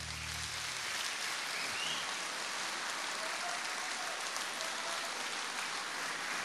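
Audience applauding at the end of a song, a dense even clapping, while the last held chord dies away in the first half-second.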